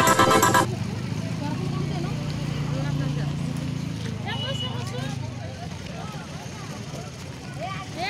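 Electronic music cut off less than a second in, giving way to street sound: a low vehicle engine hum that fades over the next few seconds, with people's voices in the background.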